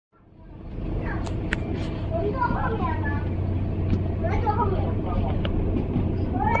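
Interior sound of a Mercedes-Benz Citaro diesel single-deck bus: a steady low engine drone inside the saloon, with passengers talking in the background and a few sharp clicks a little over a second in.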